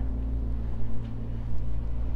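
A steady low-pitched hum with no change through the pause.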